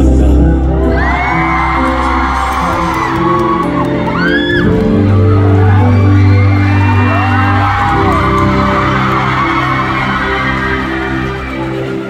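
Live instrumental outro of a ballad: held keyboard chords over a bass line, with audience members screaming and cheering in several drawn-out high shrieks. The music slowly fades toward the end.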